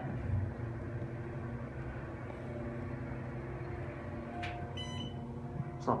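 Otis Series 5 hydraulic elevator car travelling up between floors, a steady low hum heard inside the cab. Near the end comes a short beep-like tone as the car reaches the third floor.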